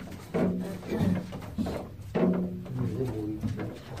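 A woman's low, wordless humming in a few short phrases on a held pitch, the longest in the second half.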